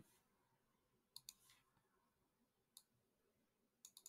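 Near silence broken by a few faint computer mouse clicks: two about a second in, one near three seconds, and two more just before the end.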